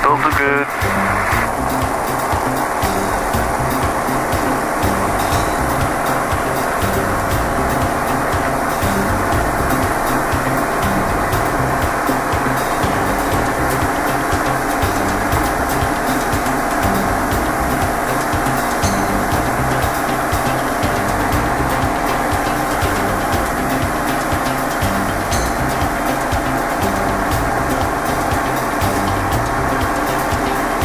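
Diamond DA20 light aircraft's piston engine and propeller at full takeoff power, a loud steady drone heard inside the cockpit through the takeoff roll and initial climb.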